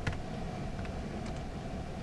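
A few faint computer keyboard keystrokes, one just at the start and a couple more a little past a second in, finishing a typed command, over quiet room hiss.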